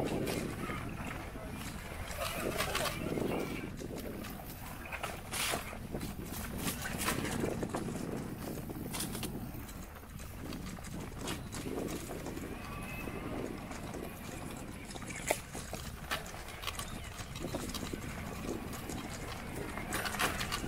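Bicycle bumping and rattling over a rough dirt track, with a low rumble of wind on the microphone and scattered sharp knocks.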